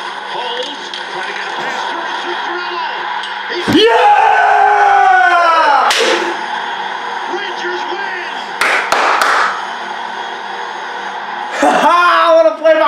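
A man's long, loud yell of celebration at an overtime goal, falling in pitch, over the TV broadcast's commentary and crowd noise. About five seconds later come two sharp slaps.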